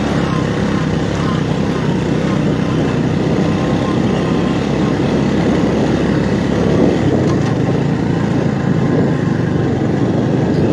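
Motorcycle engine running at a steady pace with wind and road noise as the bike carries a passenger along a rough dirt road.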